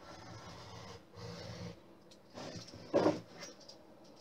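Craft knife blade scoring lines into wood along a metal ruler: a few soft scraping strokes, then a louder knock about three seconds in.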